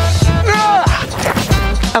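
Background music with held bass notes under a sliding melodic line.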